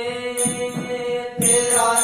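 Devotional bhajan music: a held melodic line that steps from note to note. Tambourine jingles and beats come in about half a second in and get louder about one and a half seconds in.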